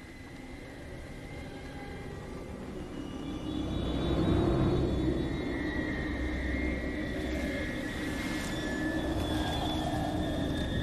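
Low rumbling drone swelling over the first four seconds and then holding, with thin sustained high tones above it: ominous horror-film sound design building tension.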